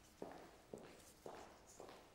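Quiet footsteps at an even pace of about two steps a second.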